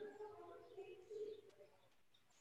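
Near silence, with a faint bird cooing in the background.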